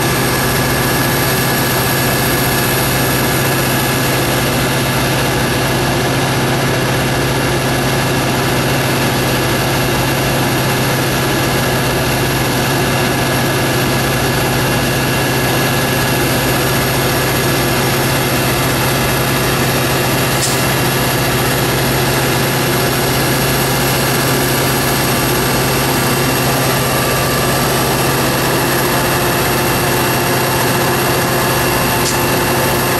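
EMD F40PH-2 diesel locomotive's 16-cylinder 645 engine running at a steady speed close by, with no change in pitch or level, a deep drone under several steady high tones.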